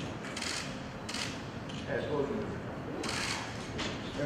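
Low, indistinct voices of people in a meeting room, with a few brief rustling swishes from people shifting and handling things.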